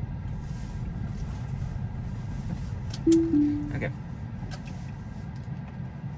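Steady low road and cabin noise in a Tesla. About three seconds in, a click is followed by a two-note falling chime: the Full Self-Driving disengagement chime as the driver takes over. A second click comes a little later.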